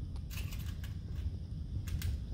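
Light handling noise: a few soft clicks and scrapes as a plastic mud flap and its hardware are handled, over a low steady workshop hum.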